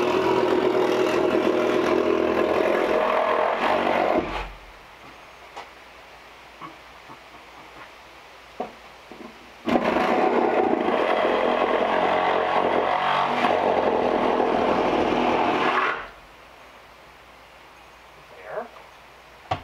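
Electric power saw cutting wood in two runs, the first lasting about four seconds and the second about six. Each stops suddenly, with a few light knocks in the pause between them.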